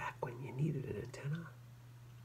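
A man's voice, soft and half-whispered, for about a second and a half; the words are not made out. A steady low hum lies under it.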